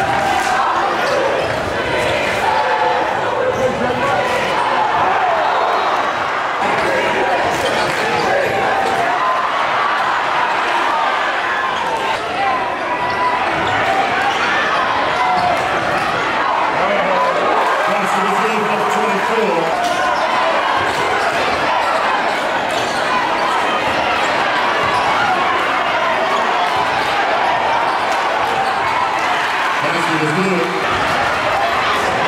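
A basketball dribbled on a hardwood gym floor, with short knocks of the bounces, over the steady din of a crowd talking and calling out in the gymnasium.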